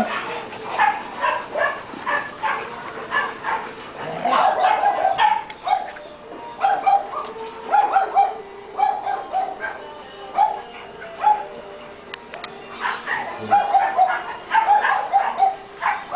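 Dogs barking during rough play, in quick runs of short barks, with a quieter lull a little past the middle.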